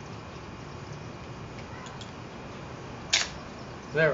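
Aluminium pocket trowel blade being worked free of its handle by its release button: a few faint ticks, then one sharp short click about three seconds in as the blade comes out.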